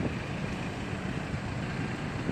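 Black Infiniti compact SUV driving slowly past close by, a steady low engine-and-tyre rumble.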